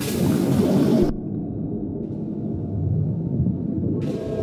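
Experimental animation soundtrack: a dense, low rumbling texture. About a second in, the higher sounds cut off abruptly, leaving only a muffled low rumble.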